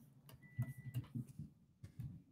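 Faint, irregular clicks and soft taps, with a brief thin beep about half a second in.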